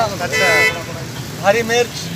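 People talking over street traffic, with a short car-horn toot about half a second in.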